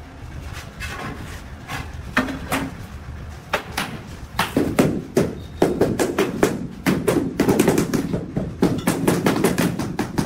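Two rubber mallets tapping a large ceramic floor tile to bed it into the wet mortar beneath. The knocks are scattered at first, then come quickly and densely from about four seconds in.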